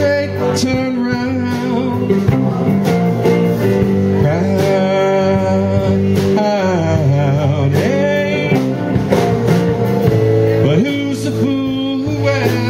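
Live rock band playing an instrumental passage: electric guitar and bass guitar over a steady beat, with lead notes that bend up and down in pitch.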